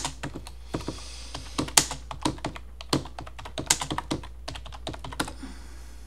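Computer keyboard typing: a quick, uneven run of keystrokes with a few harder strokes, stopping a little after five seconds in. It is a command being typed into a terminal.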